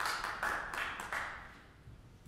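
Audience applause dying away, the clapping thinning out and stopping about a second and a half in.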